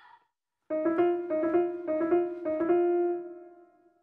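A short piano phrase starts a little under a second in, with quickly repeated struck notes, then ends on a held note that fades away. It is the musical cue for running like a horse.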